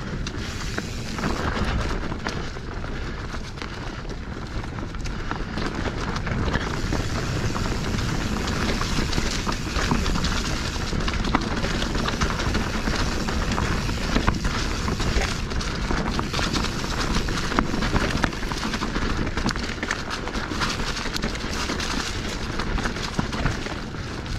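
Specialized Stumpjumper Evo Alloy mountain bike descending dirt singletrack at speed: a steady rush of tyre and wind noise, with frequent small clicks and knocks as the bike rattles over roots and stones.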